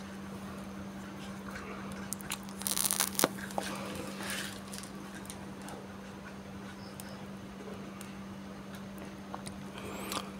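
Faint clicks and rustling from a smartphone being handled on a workbench mat, with a short crackly burst of handling noise about three seconds in, over a steady low hum.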